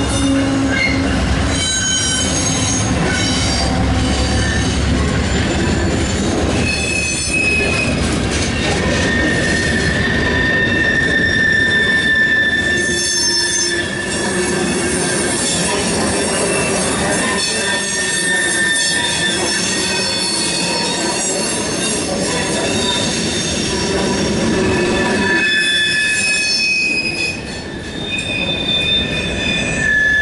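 CSX mixed freight train rolling past on the curve of a wye, its wheel flanges squealing in long, steady high tones that come and go over a continuous rumble of the cars. A horn trails off in the first second.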